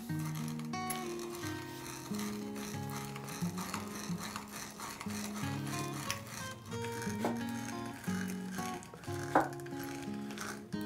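Background music with sustained notes, over the faint rasping of an auger bit in a hand brace boring into zebrawood, with a few sharp clicks.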